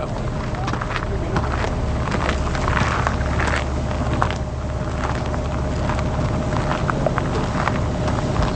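Boat engine running steadily with a low hum, under scattered irregular clicks and knocks.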